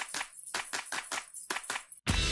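A rapid, even run of short clicks, about six or seven a second, like a typing sound effect laid under on-screen text. It cuts off suddenly.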